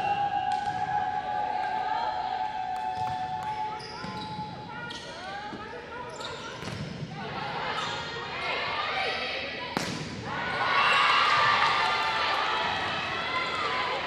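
An indoor volleyball rally: sharp ball contacts mixed with players' calls, ending in a loud ball strike about ten seconds in. Players then shout and cheer at the end of the point.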